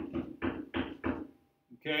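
A quick, even run of knocks on a hard surface, about three a second, stopping about a second and a half in.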